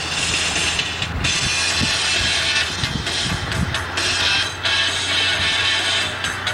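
Music playing on a car radio tuned to a rock station, heard inside the moving car's cabin.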